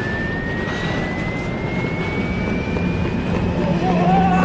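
High-speed electric train pulling away from a platform: a steady rumble with a single whine that rises slowly in pitch as the train picks up speed.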